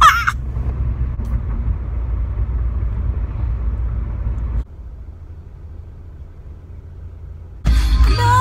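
Steady low rumble of road and engine noise inside a moving car, after a short laugh at the very start. About halfway through it cuts abruptly to a much quieter cabin hum, and music starts loudly near the end.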